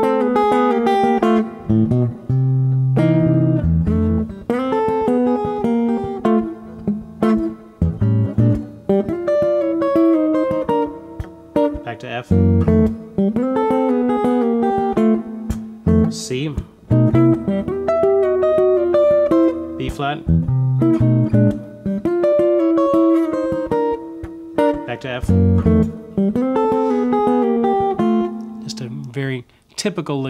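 Semi-hollow electric guitar playing sixths as two-note double stops in F, a country and blues style lick that moves between the one, two and three of the scale by half steps. It comes in short phrases with brief gaps between them.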